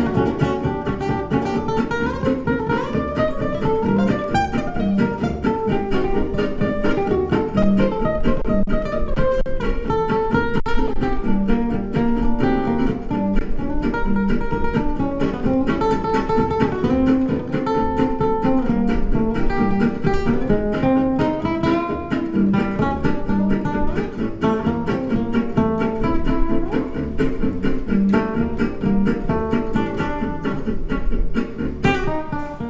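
Solo nylon-string classical guitar playing a lively jazz manouche (gypsy swing) tune, with quick picked melody lines over chords.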